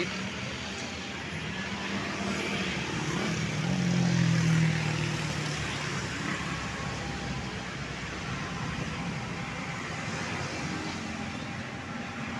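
Steady roadway traffic noise from motorcycles and cars. One vehicle passes close with a low engine hum that swells and is loudest about four to five seconds in.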